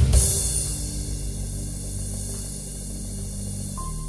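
Korg Pa600 arranger keyboard playing out a style's ending: a final accented hit just after the start, then a held chord that slowly fades. Near the end a single high piano-like note sounds.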